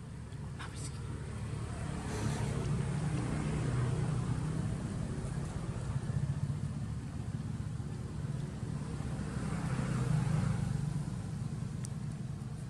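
Low engine rumble of a passing motor vehicle, swelling and fading twice: once a few seconds in and again near the end.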